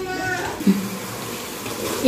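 Vegetables and masala sizzling in an aluminium pressure-cooker pot as they are stirred with a wooden ladle: a steady frying hiss.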